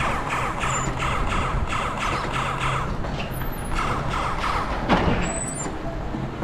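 Suspended mountain coaster car running along its steel tube track, with a steady rolling rumble and a rhythmic clatter about three times a second. A brief falling tone sounds about five seconds in.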